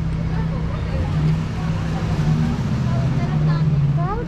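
Street traffic at a busy city corner: a vehicle engine runs with a low, steady hum that shifts pitch slightly a few times, under faint chatter of people nearby.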